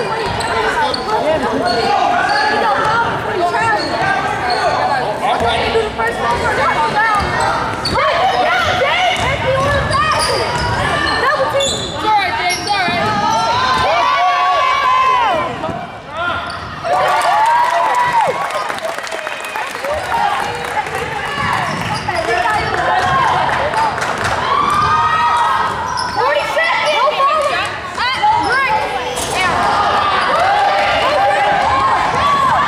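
Sounds of a basketball game in a large gym: a basketball bouncing on the hardwood floor, sneakers squeaking as players cut and run, and spectators talking and calling out, all echoing in the hall.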